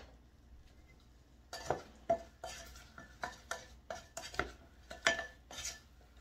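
Wooden spoon stirring syrupy chunks of apple filling in a small nonstick saucepan, knocking against the pan in a run of irregular taps that starts about a second and a half in.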